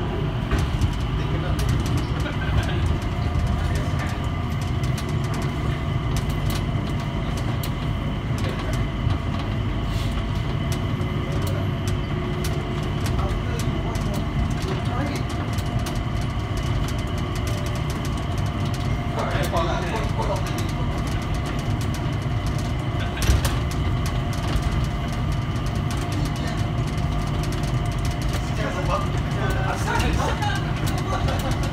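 Changi Airport Skytrain, a rubber-tyred automated people mover, running along its elevated guideway, heard from inside the car: a steady low rumble with the drive's whine held at several even pitches and scattered sharp clicks.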